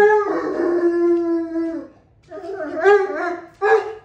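Great Pyrenees howling its short 'song': one long howl held at a steady pitch, ending about two seconds in. After a brief pause comes a second, wavering howl that stops just before the end.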